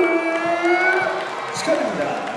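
A man's voice over a PA microphone drawing out one long held call for about a second, then going on in shouted speech, with some crowd noise behind.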